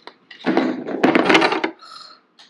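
Hard plastic modular hose segments and a plastic assembly tool being squeezed and handled on a tabletop, giving a run of clicks and rattling scrapes that lasts about a second and a half.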